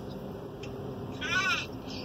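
A single short, high-pitched vocal call with a rise and fall, about a second and a half in: a person imitating a duck's quack ('cuac').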